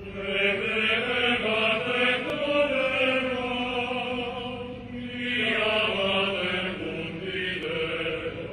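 Voices singing a slow religious chant in long held notes, with one phrase ending and a new one starting about five seconds in.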